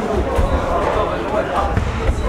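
Men's voices calling out and talking indistinctly in a hall, over dull low thuds and bumps.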